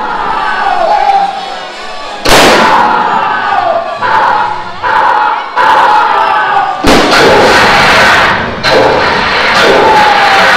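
Shouting and crowd noise during a cowboy stunt show, broken by loud sudden bangs of blank-fired guns about two seconds in, near seven seconds and near nine seconds, each followed by a burst of noise.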